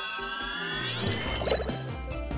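Cartoon ray-gun sound effect: a rising electronic zap as the gadget fires, over background music whose bass line comes in about a second in.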